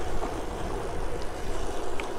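Steady wind rush over the microphone with tyre noise from an electric bicycle rolling along a paved road.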